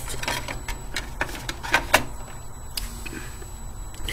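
Handling noise: a run of light clicks and knocks, with a few sharper ones between one and two seconds in, then quieter for the last couple of seconds.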